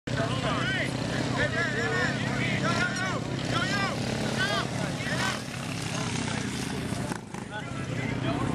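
A mini bike's small engine running steadily as it rides by, with people shouting and talking over it.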